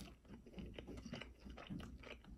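Faint chewing and biting on a chicken wing, heard as small irregular wet clicks and crackles.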